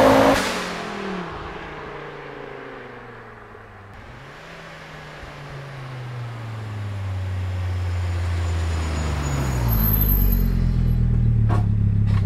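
Volvo 850 T-5R's turbocharged inline five-cylinder through a 3-inch catless exhaust, fading as the car pulls away down the road, then growing louder as it drives back toward the listener at low revs and settles into a steady low drone near the end.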